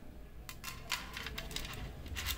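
Gold-plated jewellery being handled: a series of light, irregular metallic clinks and jingles, starting about half a second in, as a chain necklace with beads and small metal parts is moved.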